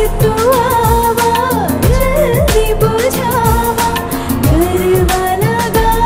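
Bhojpuri film song: a voice sings a winding melody over a steady beat of deep drum strokes that drop in pitch, about two a second.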